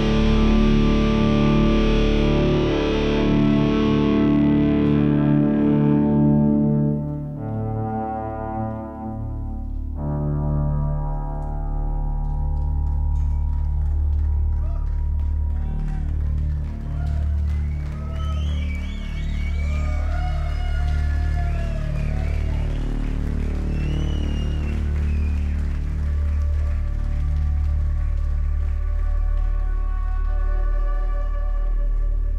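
Live rock band music: a loud, distorted held chord from the full band fades out about seven seconds in, leaving a steady low bass drone. Over the drone an electric violin plays wavering, sliding high notes for much of the second half.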